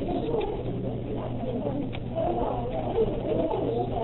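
A few faint computer keyboard clicks as text is typed, over a steady low hum and faint, indistinct wavering murmur.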